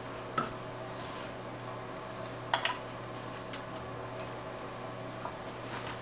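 A few light clicks and taps of a small bottle and measuring spoon handled over a stainless steel mixing bowl: one sharp click about half a second in and a quick double click about two and a half seconds in. A steady faint hum runs underneath.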